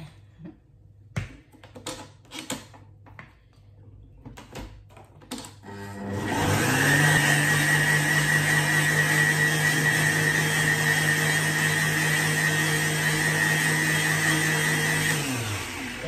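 Countertop blender, a few clicks and knocks as the jar and lid are handled, then the motor starts about six seconds in and runs steadily at high speed with a high whine, blending pineapple chunks with soda, before it is switched off and winds down near the end.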